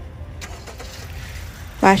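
Faint low rumble of car noise, then a woman starts talking near the end.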